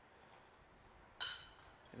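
Metal baseball bat striking a pitched ball once about a second in: a sharp ping with a brief ringing tail, against an otherwise very quiet background.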